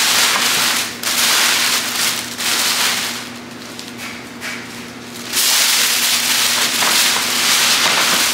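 White tissue paper rustling and crinkling as it is pushed and worked into a paper gift bag, in loud stretches with a quieter spell in the middle.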